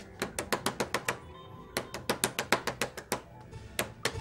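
A wooden door being banged on rapidly with the hands: two long runs of knocks, about seven a second, with a short pause between them, then a single knock near the end.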